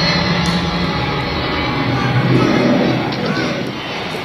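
Loud, dense rumbling noise from the show's recorded soundtrack over the auditorium speakers, swelling to its loudest about halfway through.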